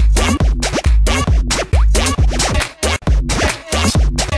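Electro house / fidget house dance music from a DJ mix, with a heavy bass line, a busy beat and sounds that glide up and down in pitch. The track thins out briefly about three seconds in.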